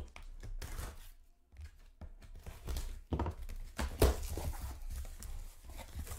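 A cardboard shipping case of trading cards being handled and opened: scraping and tearing of cardboard and packing tape, with a sharper knock about four seconds in.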